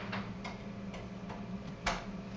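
A few faint clicks, then a sharper click just before the end, over a steady low hum.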